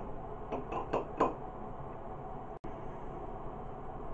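Four quick light taps and clinks against a glass beaker in the first second and a half, as a dried cake of black electrode powder is knocked and broken up over it. After that only faint, steady low background noise.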